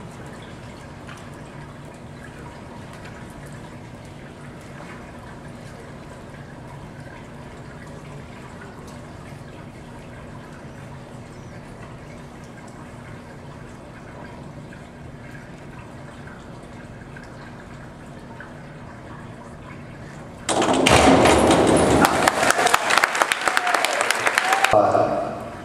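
Steady low hum of an indoor pool hall, then about twenty seconds in a sudden loud burst of crowd applause and cheering lasting about four seconds, as the diver enters the water.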